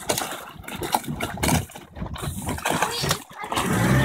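Irregular wind and water noise on an open microphone, with scattered short knocks.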